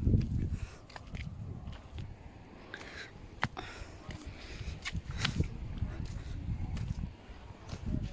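Footsteps crunching over stony ground, with scattered sharp clicks of stones underfoot, the loudest about three and a half and five seconds in, over a low rumble.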